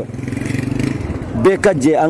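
A vehicle engine running steadily with an even low pulse for about a second and a half, then a man's voice starts speaking over it.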